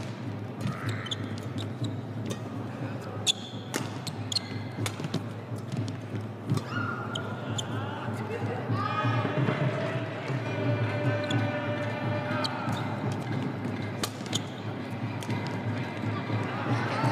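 Badminton rally: sharp racket strikes on a shuttlecock at irregular intervals, over the steady background of a crowd in a large hall.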